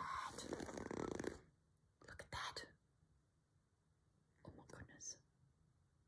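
A woman's soft, breathy whispering for about a second and a half, then two brief faint sounds about two and five seconds in.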